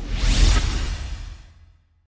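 Swoosh sound effect of a news-channel logo sting over a deep low boom. It swells to a peak about half a second in and fades out before two seconds.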